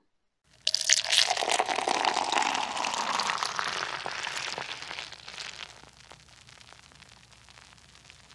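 Beer pouring into a glass and fizzing. It starts suddenly about half a second in with a dense crackle of foam, then dies away over several seconds into a faint fizz.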